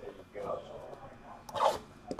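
A sealed cardboard trading-card box being slid off a stack and handled, with a short scraping rasp of cardboard on cardboard about a second and a half in.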